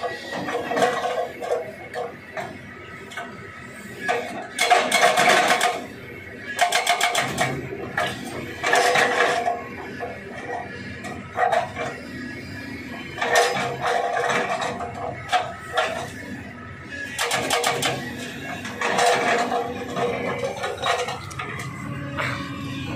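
Hydraulic rock breaker on a Kobelco SK200 excavator hammering rock in repeated bursts of rapid blows, each lasting a second or two, with the excavator's engine running between bursts.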